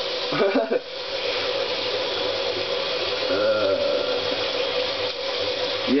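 Tap water running steadily into a bathroom sink, with a steady whine from the faucet or pipes. Two short vocal sounds come over it, about half a second in and about three and a half seconds in.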